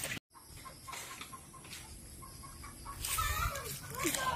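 Chicken clucking: scattered faint short calls, then louder clucks in the last second, over a faint steady high whine.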